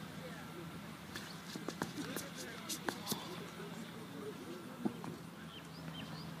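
A run of short, sharp clicks and knocks about a second to three seconds in, with one more near the end, over a low steady hum.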